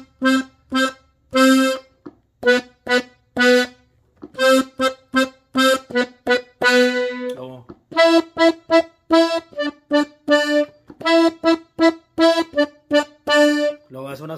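Button accordion tuned in G, played on the treble side in short detached octave notes. Repeated C's and B's come first, then repeated E's and D's from about eight seconds in.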